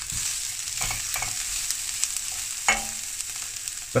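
Diced onion and red pepper sizzling steadily in a non-stick frying pan as they begin to caramelise, stirred with a spatula, with a few sharp clicks of the spatula against the pan.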